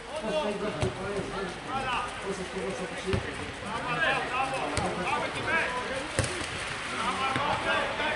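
Men shouting across a football pitch, with several sharp thuds of the ball being kicked.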